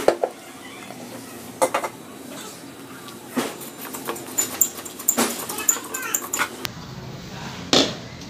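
A metal slip-on motorcycle exhaust silencer being twisted loose and pulled off its link pipe by hand: a series of metallic clinks and knocks, packed most closely between about four and six and a half seconds in.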